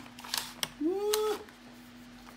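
Phone-case packaging being handled: a few light clicks and scrapes as a plastic tray is slid out of a cardboard box, with a short hummed voice sound in the middle.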